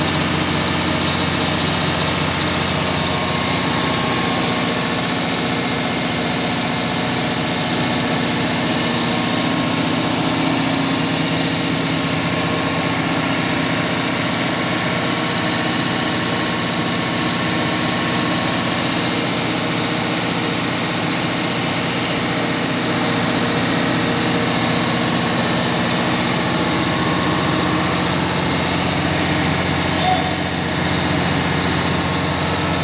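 Weichai diesel generator set running steadily at constant speed on its first test run, a continuous even engine hum with no change in pitch.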